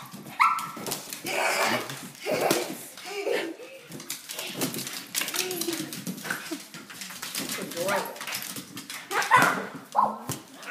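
A pug barking as it chases a balloon, over many short, sharp knocks as the balloon is kicked and bounces on a hardwood floor.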